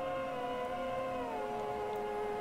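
Background music in a pause of speech: a few held, sustained tones that slide down in pitch about a second in and then hold steady.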